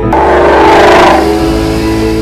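A Ford Mustang driving past at speed: engine and road noise rise to a peak about a second in, then fade, over faint background music.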